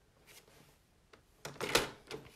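After a quiet stretch, a short scrape and rustle of cardstock and plastic on a paper trimmer fitted with a scoring blade, about half a second long, near the end.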